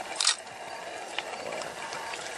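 Porcupine rattling its quills in one short dry burst, followed by a couple of faint clicks.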